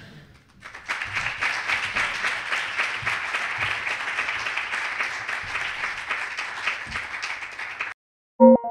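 Audience applauding in a lecture hall, starting about a second in and holding steady until it is cut off abruptly.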